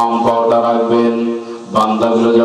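A man's voice chanting a sermon in long, held melodic tones, breaking off briefly near the end before starting a new phrase.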